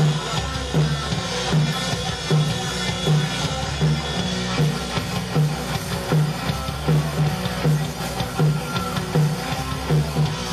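Live rock band playing: two electric guitars, bass guitar and drum kit, with the kick drum marking a steady beat a little more than once a second.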